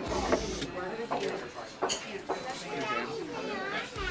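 Indistinct voices talking, with a few short sharp clinks of a metal fork on a plate, the loudest one right at the start.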